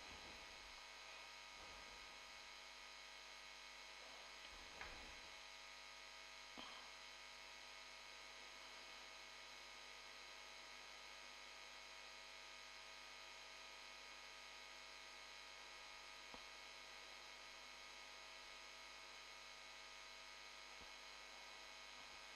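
Near silence: a faint, steady electrical hum, with a couple of faint short knocks about five and six and a half seconds in.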